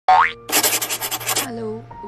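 Intro title sound effects: a short, loud rising boing-like sweep, then about a second of rapid noisy swishing strokes. A simple music melody starts after that.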